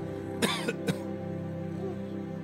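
Slow background music of steady held chords, with a person's short cough about half a second in, followed by two brief sharp sounds.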